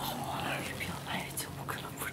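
Hushed, whispered talk between a few people sitting close together, over a low steady hum.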